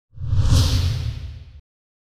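A news-broadcast transition whoosh: a rushing sweep over a deep rumble. It swells quickly, then fades and cuts off about a second and a half in.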